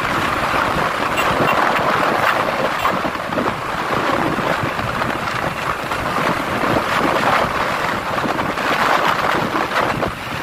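Steady wind rushing over the microphone on a moving motorcycle, with the bike's running and road noise underneath.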